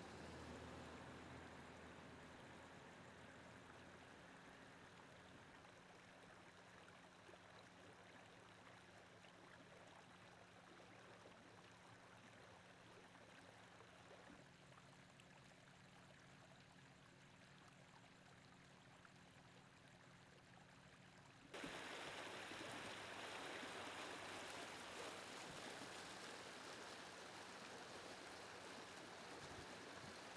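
Water from a sheared fire hydrant running along a street gutter, a faint steady rush at first that turns abruptly louder and fuller about two-thirds of the way through.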